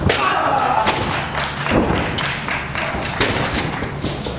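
Several heavy thuds of wrestlers and a metal ladder hitting the wrestling ring mat, with voices shouting.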